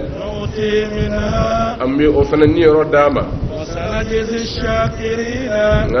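A man's voice chanting Quranic verses in Arabic: melodic recitation with long held notes.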